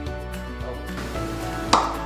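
Background music, with one sharp pop near the end as the cap blows off a small sealed container, forced off by gas from an Alka-Seltzer tablet fizzing in warm water.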